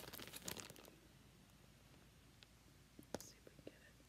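Near silence with faint crinkling of a clear plastic bag being handled: a few soft crackles near the start and again about three seconds in.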